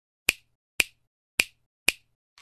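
Four sharp snapping clicks about half a second apart, a sound effect edited onto an animated intro title.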